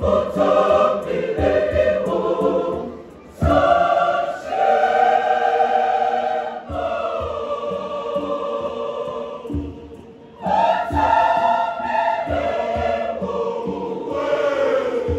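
A large mixed choir singing in harmony. The voices fall away briefly about three seconds in and again about ten seconds in, then come back in full.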